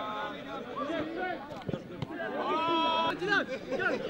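Football players shouting to each other during play, with one long held call about two seconds in and a few short sharp knocks.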